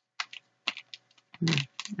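Tarot cards being handled and shuffled in the hands: a run of short, sharp clicks and snaps of card stock, the loudest about one and a half seconds in.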